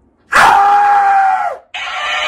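A man screams once, a long held yell that drops in pitch as it ends; near the end a dancing-cactus mimic toy starts playing the scream back through its small speaker, higher-pitched.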